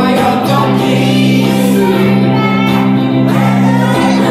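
A live song: voices singing over a guitar, with long held notes.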